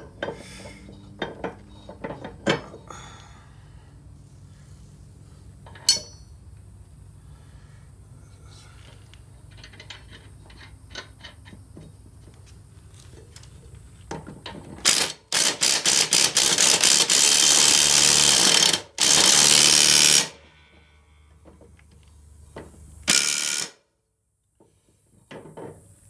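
Cordless impact driver tightening a mower blade bolt onto a deck spindle: a burst of rapid hammering about halfway in, lasting about five seconds and broken once, then a short burst a few seconds later. Before that there are light clinks and clicks of the blade and washer being handled.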